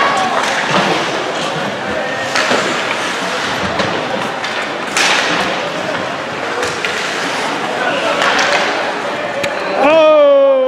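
Ice hockey play in a rink: skates scraping and sticks and puck clacking over spectator chatter, with a few sharp knocks, the loudest about halfway through.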